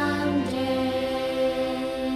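A children's hymn being sung: one note, reached by a short step down, is held steadily as the end of a sung line.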